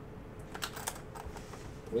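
A series of light, sharp clicks and taps as an aluminum card briefcase is unlatched and opened and the hard plastic card cases inside are handled.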